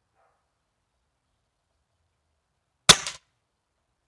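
A single shot from an Air Arms S400 pre-charged pneumatic air rifle about three seconds in: one sharp crack with a brief tail.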